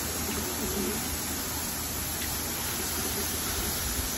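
Steady hiss of water spraying from a garden hose nozzle onto pigeon cages.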